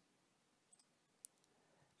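Near silence, broken once a little over a second in by a single faint computer-mouse click as an item is chosen from a drop-down menu.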